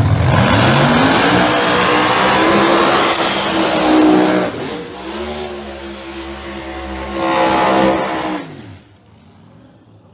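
Pro Mod drag car engine revving hard through a burnout, the rear tyres spinning and smoking. The pitch climbs in the first second and holds high for about four seconds, eases off, then revs up again and cuts off suddenly near the end.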